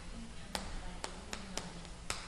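Chalk tapping against a chalkboard as characters are written: about five faint, irregularly spaced clicks over a low steady room hum.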